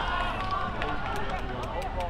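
Several voices calling and shouting across an outdoor football pitch during play, not close enough to make out, with a few sharp clicks in the second half.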